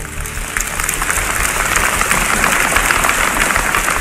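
Audience applause in a large hall, many hands clapping together. It swells over the first couple of seconds and eases slightly near the end.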